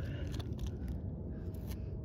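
A putty knife spreading thick roofing sealant around a rubber vent-pipe boot, with a few faint scrapes and smears over a steady low rumble.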